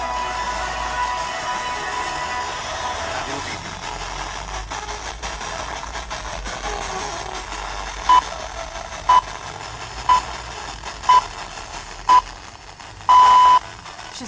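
BNR Radio Vidin's FM broadcast heard through a portable radio receiver. Music fades out over the first few seconds, leaving background hiss. Then comes the hourly time signal: five short high pips a second apart and a longer sixth pip marking the top of the hour before the 17:00 news.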